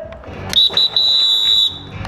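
A shrill, high-pitched signal tone starting about half a second in, with two brief breaks early on, held for about a second before it cuts off near the end.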